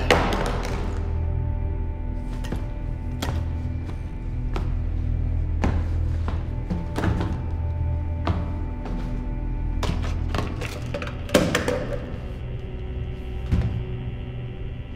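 Dark film score with a steady low drone, broken by a dozen or so sharp thuds and knocks spread through it, the loudest right at the start and another heavy one about eleven seconds in.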